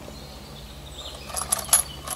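Dwarf bean seeds rattling and clicking inside a homemade plastic-tube seeder as it is shaken to make sure they have dropped into the hole. The sharp clicks come in a quick cluster in the second half.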